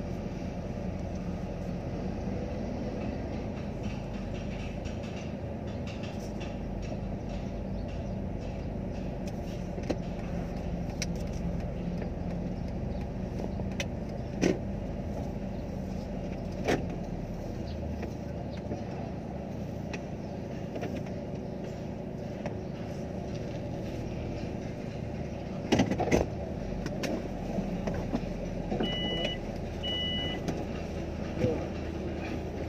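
Steady low hum of a car's idling engine heard inside the cabin, with a few sharp clicks and knocks, a cluster of them about four seconds before the end. Near the end come two short high electronic beeps.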